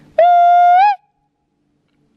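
A woman's loud hooting call, one steady note of under a second that rises slightly at the end. It is a signal call to locate her companions at camp.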